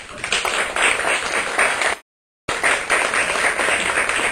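Audience applauding, a dense patter of many hands clapping. It cuts out suddenly about halfway through, a gap of about half a second in the recording, then carries on.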